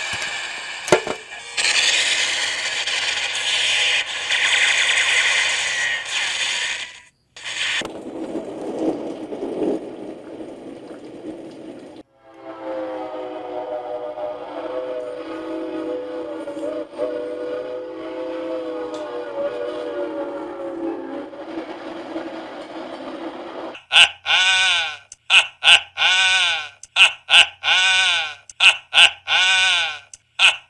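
Film soundtrack music and effects: a dense, noisy stretch, then a long held chord, then a rapid run of short swooping notes near the end.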